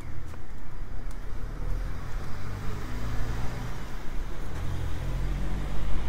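A small kei truck driving along the street close by: a low engine drone with tyre noise on the road, loudest near the end.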